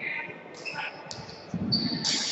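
Sports-hall background of indistinct voices, with a sharp knock about a second in and dull thuds near the end.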